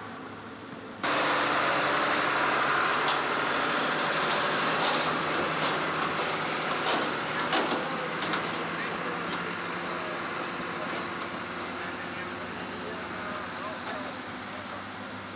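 Tractor engine running while pulling a loaded silage trailer over rough ground, with rattles and a few sharp knocks from the trailer. The sound cuts in suddenly and loudly about a second in.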